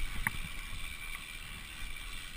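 Mountain bike rolling down a dirt singletrack, with steady tyre and rattle noise from the trail surface. A sharp click comes just after the start, and a thin high whine stops about a second in.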